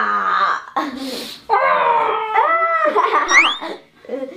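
A girl and a woman shrieking and laughing without words after a scare prank, with a sharp rising shriek a little after three seconds.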